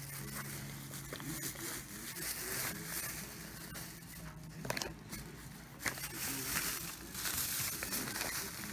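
Plastic shopping bags rustling and crinkling as they are handled, with a couple of light knocks about halfway through.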